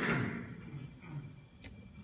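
The fading tail of a loud knock in the first half-second, then faint clicks over quiet room noise.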